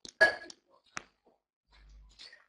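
A brief throaty vocal sound, then a single faint click about a second later.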